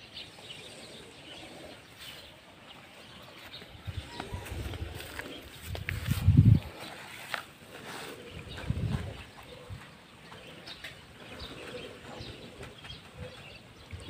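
Outdoor ambience with faint bird calls, and low rumbles in the middle, the loudest about six and a half seconds in.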